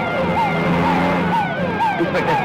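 Emergency-vehicle siren in a quick whooping cycle, its pitch rising and falling about twice a second.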